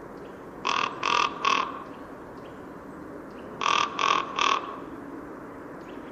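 A crow cawing: two series of three short, harsh caws, the first series about a second in and the second about three seconds later.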